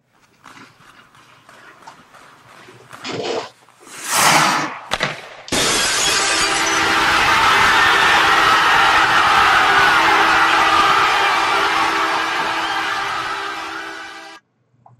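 Intro sound effects: a few short whooshes build up, then a loud crash about five and a half seconds in rings on at a steady level and fades out near the end.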